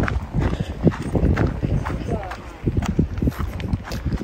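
Irregular footsteps knocking on a paved trail, over a low rumble of wind on the phone's microphone.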